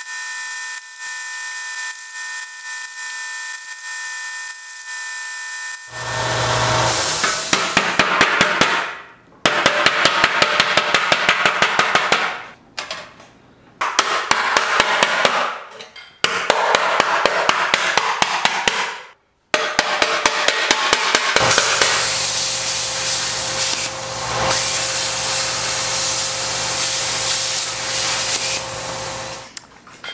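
A power grinder whines steadily for about six seconds. Then an auto-body hammer beats sheet steel over a hollow in a wooden log stump: rapid metallic strikes, several a second, in runs broken by short pauses.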